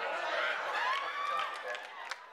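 Speech: people talking, with one voice gliding up in pitch around the middle.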